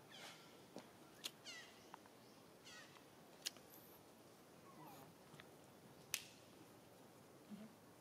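Faint, high-pitched squeaky calls from a macaque: several short calls falling in pitch in the first few seconds and a lower one about five seconds in, with a few sharp clicks between them.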